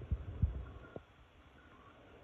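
Handling noise on a handheld phone: a few soft low thumps and a click in the first second, then faint steady room hum.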